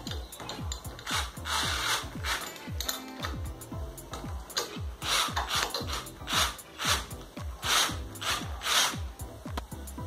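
Cordless drill-driver driving screws through a metal wall bracket into plastic wall anchors in a series of short bursts.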